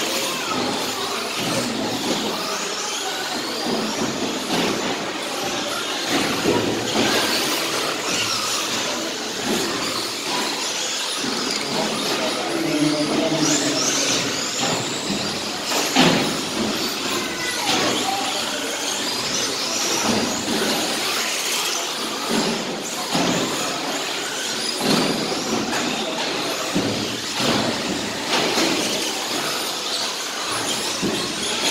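Several electric short course RC trucks racing: the motors whine up and down as the cars accelerate and brake, with tyre noise on a concrete floor. There is a sharp knock about sixteen seconds in.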